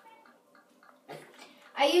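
Faint, soft wet sounds of a small dog being lathered and scrubbed with shampoo in a bath.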